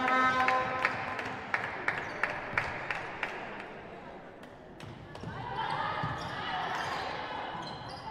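A volleyball is bounced repeatedly on the indoor court floor, a quick series of thuds over the first three seconds, as the server readies a serve. Just before halfway there is a single slap of the serve, and voices in the hall pick up after it.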